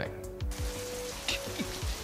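Rain falling steadily, starting suddenly about half a second in, over soft sustained background music.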